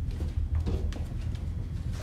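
A steady low rumble, with a few faint clicks and rustles over it.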